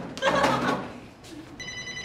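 A person's voice briefly near the start, then a telephone ringing from about a second and a half in, a steady electronic tone.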